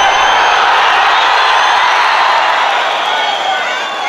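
Large arena crowd shouting and cheering, loudest a second or two in, with a few high-pitched whistles.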